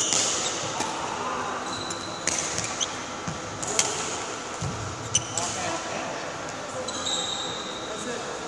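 Badminton rally: a shuttlecock struck hard by rackets about every second and a half, with short high squeaks of court shoes on the floor, ringing in a large sports hall.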